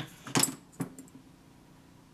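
Small metal sculpting tools clinking against each other and the wooden tabletop as they are set down: three sharp clinks in the first second, the second the loudest, with a few faint ticks after.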